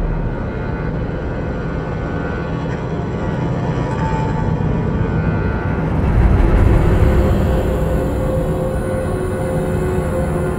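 Dark, suspenseful film score: a low rumbling drone with sustained tones, swelling about six seconds in, with higher held tones coming in after the swell.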